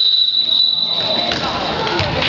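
A referee's whistle blowing one long, steady high blast for about a second and a half before it fades, over voices in a gym.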